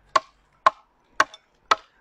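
Single-bevel side axe chopping into a split ash stave, four sharp strikes about half a second apart. These are the hatch marks cut up the side of the stave, so that the shavings will peel away when it is hewn down.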